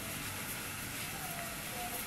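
Low, steady background hiss with no distinct event; a faint thin tone comes in about a second in.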